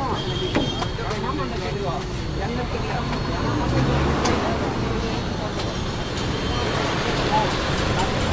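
Street traffic passing on a busy road: a steady low rumble of engines that swells around the middle as a vehicle goes by. Voices can be heard in the first couple of seconds.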